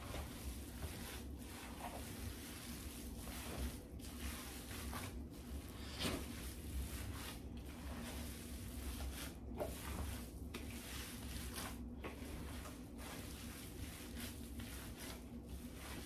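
Gloved hands kneading and squeezing a large mass of raw ground meat sausage filling: soft, irregular squishing over a low steady hum.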